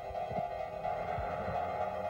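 Background music: a sustained drone of held tones with soft low pulses beneath it.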